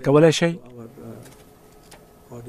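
Speech: a man's voice for about the first half second, then a faint, low voice murmuring in the background.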